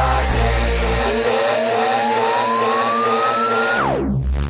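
DJ mix transition: the music's bass is cut about a second in, and a rising sweep climbs for nearly three seconds, then drops away sharply just before the next track comes in.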